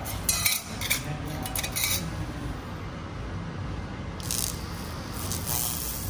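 A small metal test plate clinks and scrapes as it is handled and set down on a hard stone floor, a few short sharp clicks, with a steady low hum from the air-cooled laser cleaning machine underneath.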